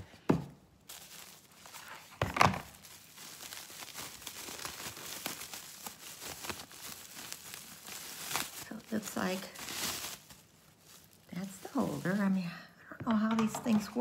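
Paper and cardboard packaging being handled and opened: crinkling and tearing, with a sharper rip about two seconds in.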